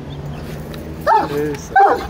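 A young Alabai (Turkmen Central Asian Shepherd Dog) gives two short, high whining yelps, one about a second in and one near the end, over a low steady hum.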